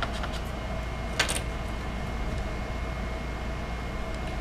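Steady low background hum throughout, with one short scratchy rip about a second in as tape is pulled off the guitar's headstock at the truss rod opening.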